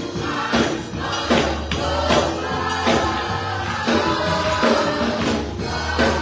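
Gospel choir singing with hand claps on a steady beat, a little more than one clap a second, over a low bass line.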